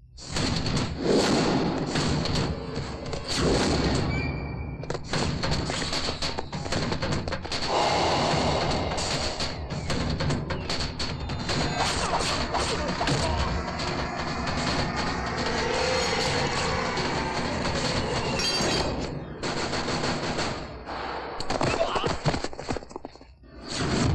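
Film fight-scene soundtrack: dramatic background score with many sharp punch and impact sound effects, thuds and crashes coming thick and fast, dropping away briefly near the end.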